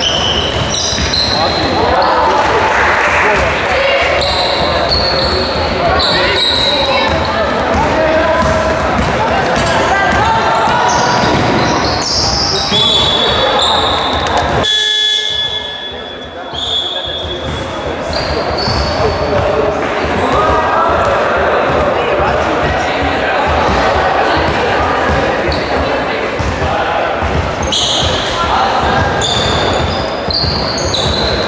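Basketball game in a large echoing gym: the ball bouncing, sneakers squeaking on the hardwood court, and players and spectators shouting. There is a brief break in the sound about halfway through.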